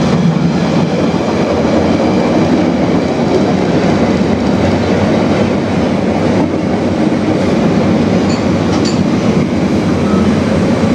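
Loaded freight train of open wagons passing on the far line: a loud, steady rumble of wagon wheels running over the rails.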